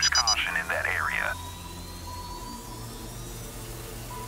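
A dispatcher's voice over the radio stops about a second in. After it, a low steady background drone remains, with a thin steady tone and a faint rising whistle.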